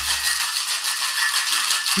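Ice rattling hard inside a metal cocktail shaker being shaken fast and vigorously, a rapid, even rhythm of strokes. This is a hard shake to break the ice into small pellets, chill the drink and whip air into it.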